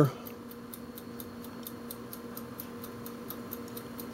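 Faint steady hum with a light, regular ticking, several ticks a second.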